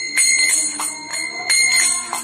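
Karatalas (small brass hand cymbals) struck together in a steady rhythm, about five strokes in two seconds, each one ringing on.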